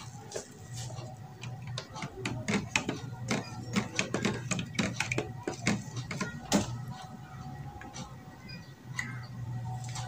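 Light, irregular clicks and taps from handling a glass dye jar and a spoon over a plastic tub, several a second at times, over a faint steady hum.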